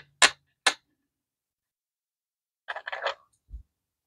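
Pennies clinking against each other as coins are handled: three sharp clicks in the first second, a quick cluster of lighter clicks near three seconds, then a soft low thump.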